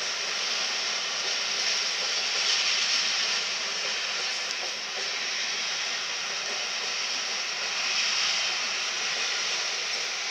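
Railway coaches rolling past close by, a steady rush of wheels on rail.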